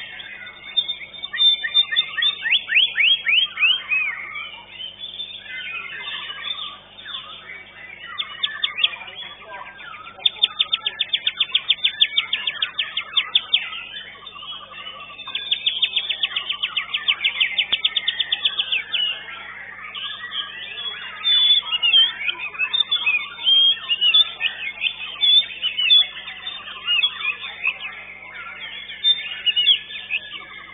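White-rumped shama (murai batu) singing in a contest cage: a varied, continuous song of quick whistled phrases, with long runs of rapidly repeated notes about a third of the way in and again near the middle.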